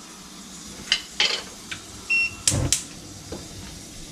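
A nonstick pan set down on a gas cooktop's metal grate with a few knocks, then a short high tone, then two sharp clicks from the burner's igniter as the knob is turned and the gas lights.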